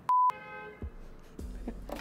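A short, loud electronic beep, a single steady tone like a censor bleep, just after the start. Faint steady background tones and room noise follow.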